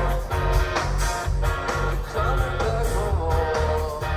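Live rock band playing: electric guitar over bass and drums, with regular drum hits.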